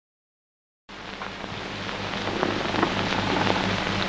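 Hiss and low hum of an old optical film soundtrack, starting a moment in after silence and growing louder, with a few faint knocks.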